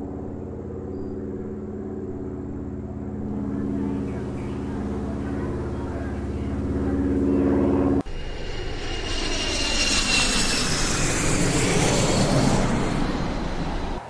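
Airplane engine sound: a steady engine drone for about eight seconds, then an abrupt cut to a louder jet rush with a high whistle that swells and fades near the end.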